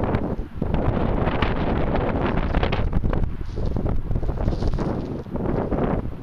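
Wind buffeting the microphone: a loud, gusty rush of noise that rises and falls, with a brief lull about half a second in.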